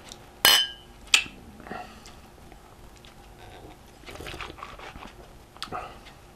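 Two small glasses of beer clinked together in a toast about half a second in, a bright short ringing chime, followed by a second sharp tap; after that only faint sipping and handling noises.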